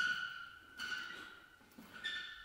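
Two high squeaks about a second apart from the chain and swivel of a swinging maize bag, each starting sharply and fading away.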